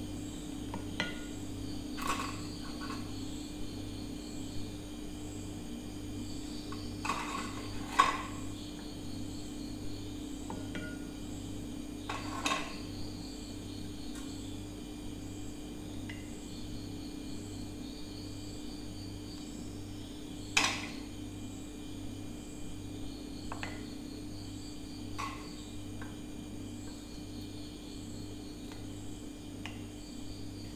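Occasional light clinks and taps of hands and biscuits against glassware as coffee-dipped biscuits are laid into a glass dish, the sharpest about eight seconds in. Under them run a steady low hum and faint, evenly repeating high chirps.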